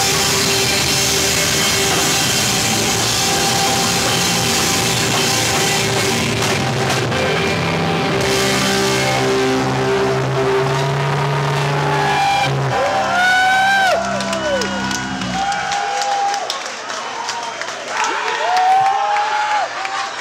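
Screamo band playing loud and live, with distorted guitars and drums. About halfway through, the drumming gives way to held guitar chords ringing out, which cut off about sixteen seconds in. Crowd shouting and yelling runs over the close.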